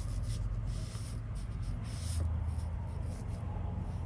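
Faint, uneven rustle of a soft-hair Chinese painting brush (Full Moon brush) stroking paint across Pi paper, over a steady low hum.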